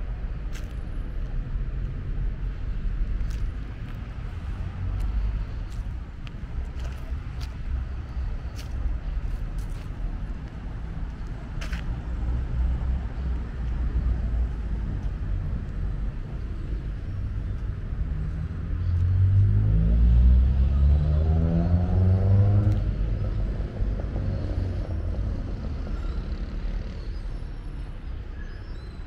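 Steady low street-traffic rumble, with one vehicle's engine rising in pitch as it accelerates, louder about two-thirds of the way in. A few sharp clicks sound in the first half.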